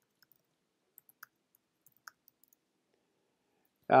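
Faint, sparse keystrokes on a computer keyboard: about a dozen soft clicks over the first two and a half seconds as a line of text is typed, then a pause.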